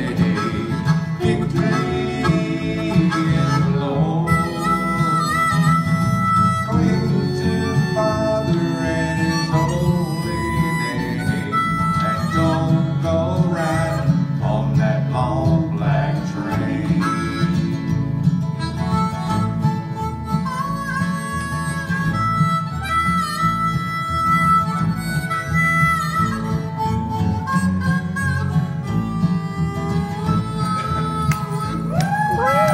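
Harmonica playing the lead in an instrumental break, over strummed acoustic guitars and an upright bass.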